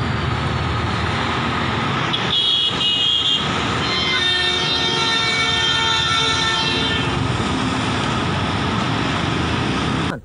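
Highway traffic noise from heavy trucks passing, with a vehicle horn sounding twice: a short blast about two seconds in and a longer one from about four to seven seconds in.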